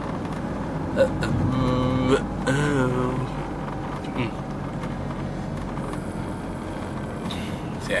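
Steady low rumble of a car's engine and tyres heard from inside the cabin while driving. There is a sharp knock about a second in, then a person's drawn-out, wavering voice for about two seconds.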